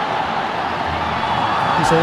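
Steady stadium crowd noise from a football match, with the commentator's voice coming back in near the end.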